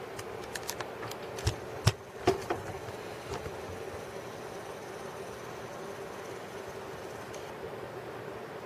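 Handling clicks and knocks, about a dozen sharp ones in the first three and a half seconds, the loudest about two seconds in, over a steady faint hum.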